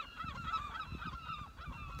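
A flock of birds calling outdoors, many short honking calls in quick succession overlapping one another, over a low rumble on the microphone.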